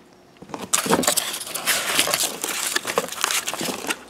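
Corrugated cardboard and styrofoam packing rustling and scraping as a cardboard sleeve holding steel lathe-chuck jaws is handled. Many light clicks run through the rustle. It starts about half a second in.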